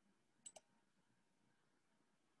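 Near silence, broken by two quick computer-mouse clicks about half a second in.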